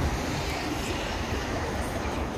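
Steady low rumble with a hiss above it.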